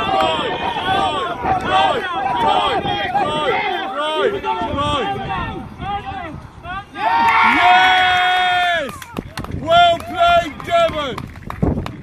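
Many voices shouting short calls over one another during a rugby scrum, with one long drawn-out shout about seven seconds in.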